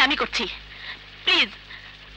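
Speech: a few short spoken syllables, then one falling vocal sound about a second and a half in.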